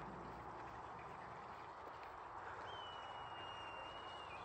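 Faint, steady outdoor background noise. Near the end, a single thin, high whistle is held for about a second.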